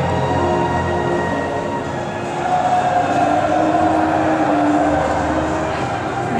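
Steady, loud din of a crowded exhibition hall, with held tones from the stand's sound system rising over it in the middle seconds.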